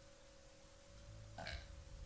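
Near silence in a gap of a metal album recording: a faint steady hum, and a brief faint noise about one and a half seconds in.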